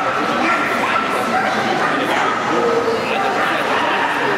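A dog barking and yipping repeatedly during an agility run, mixed with voices.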